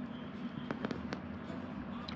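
A few light clicks about a second in, from a plastic net-mending needle being handled over a nylon throw net, over a steady low hum.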